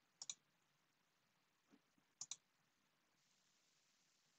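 Two faint computer mouse clicks about two seconds apart, each a quick press-and-release pair, over near silence.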